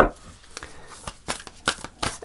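A deck of oracle cards being shuffled by hand: a string of short, irregular card snaps and taps, about seven in two seconds.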